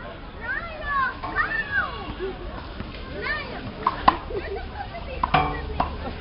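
Scattered voices of people and children calling out, with a sharp knock about four seconds in and another just before the end.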